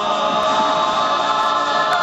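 High school a cappella ensemble singing unaccompanied in close harmony, holding a sustained chord.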